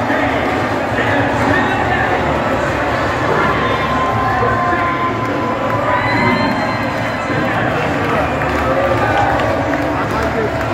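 Large baseball stadium crowd: thousands of fans shouting and cheering at once, a steady wall of overlapping voices with a few held shouts standing out.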